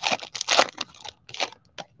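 Foil trading-card pack wrapper being torn open and crinkled by hand: a run of irregular crackles and rips, loudest about half a second in, thinning to a few small crackles near the end.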